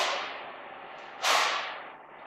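Two sharp smacks about 1.3 seconds apart, each dying away over about half a second in the echo of a large hard-walled room.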